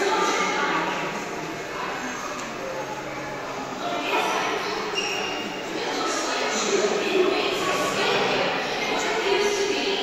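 Indistinct voices echoing in a large indoor hall, with no words clear enough to make out.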